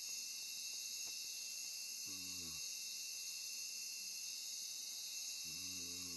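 Steady insect chorus of crickets, a continuous high, even shrilling. A faint low call of about half a second recurs twice, roughly three seconds apart.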